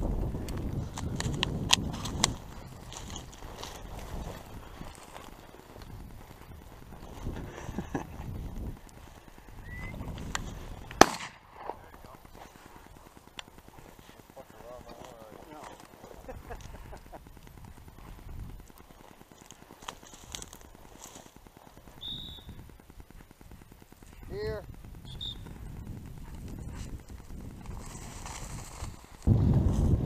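A single sharp shotgun shot about eleven seconds in, the loudest sound here, over wind rumbling on the microphone.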